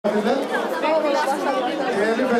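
Several voices talking over one another: chatter in a crowded hall.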